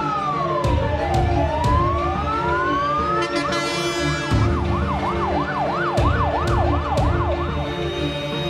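Fire engine siren sounding in slow rising and falling wails, then switching about three and a half seconds in to a fast yelp of quick up-and-down sweeps.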